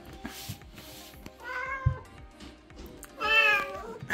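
Kitten meowing twice while begging to be fed: a shorter call about a second and a half in, then a longer, louder one near the end.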